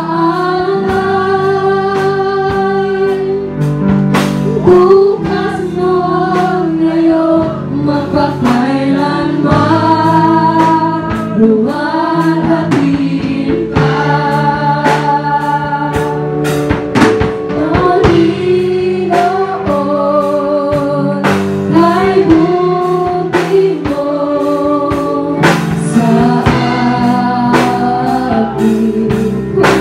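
A live worship band playing: a woman sings the lead in long held, wavering notes over drum kit, electric guitar, bass guitar and keyboard, with drum hits throughout.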